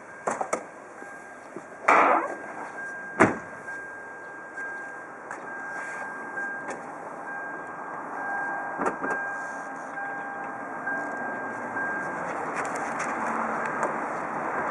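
A car's trunk lid pulled down and shut with one sharp thud about three seconds in. Lighter knocks and handling noises follow against steady background noise that grows louder toward the end.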